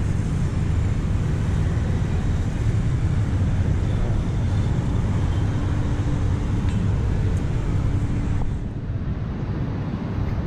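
Steady road traffic noise from a busy multi-lane city avenue: a low, continuous rumble of cars driving by. It eases slightly near the end.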